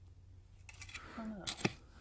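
A hand scraping and scratching through packed soil, with a short sharp click about a second and a half in.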